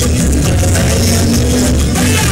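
Calypso band music with a steady bass line under held instrumental notes, in a stretch between sung lines.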